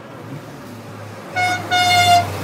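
A car horn sounds twice, a short toot about a second and a half in and then a longer, louder one near the end, over the low hum of a passing car's engine.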